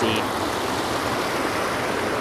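Creek water rushing steadily over rocks in a shallow whitewater riffle.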